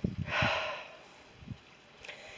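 A single audible breath close to the microphone, a short hissy sigh or exhale lasting about half a second near the start, with a few faint low knocks of camera handling or footsteps.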